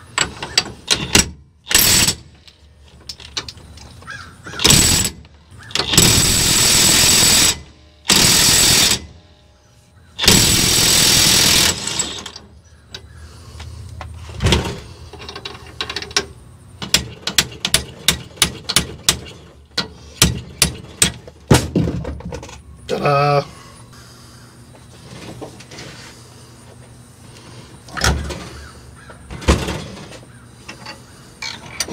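Cordless impact wrench running in several bursts of one to two seconds on the nut at the end of a hydraulic cylinder rod, followed by many sharp metal clicks and clinks as parts are handled.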